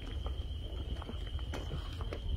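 Outdoor ambience dominated by a steady, high-pitched insect drone, with a low rumble of wind on the microphone and scattered short clicks and rustles.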